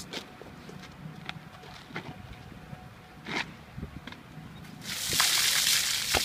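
A bucket of ice water poured over a person's head: a loud rush of splashing water starting near the end, after a few seconds of scattered light knocks and clicks.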